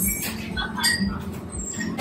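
Background noise of a busy eatery, with a low steady hum and a few short high-pitched squeaks or chirps.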